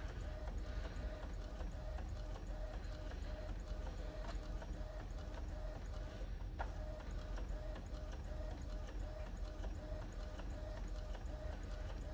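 Epson EcoTank inkjet printer printing slowly in high-quality mode: a faint, steady mechanical whir with a short, regularly repeating pattern as the print head works across the page and the paper feeds out.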